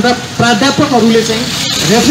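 A man speaking through a handheld microphone and loudspeaker, over a crackling hiss, with a brief dropout near the end.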